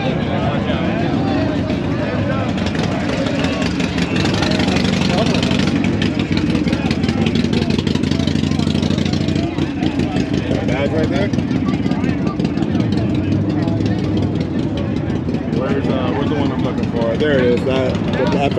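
A motorcycle engine running at idle, a steady rapid pulse, under the chatter of a crowd.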